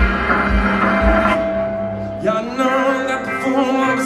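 Live rock band with electric guitars and drums played loud in a club, recorded on a phone from the crowd. A held guitar chord rings for about two seconds, then the band kicks in fuller and a man's singing voice comes in.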